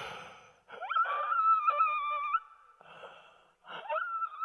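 A man gasping and making a high, strained, choking whine that starts with a quick upward slide and is held for about a second and a half, then a shorter one near the end. He is acting out being strangled by a rope noose pulled tight around his neck.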